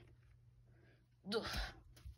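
A short, pitched exclamation from a person's voice about a second and a half in, after about a second of near silence.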